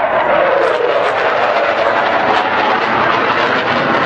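F-16 fighter jet's engine heard from the ground as it passes in a display manoeuvre: a loud, continuous jet noise whose whine falls in pitch during the first second as the jet goes by, then a steady rush.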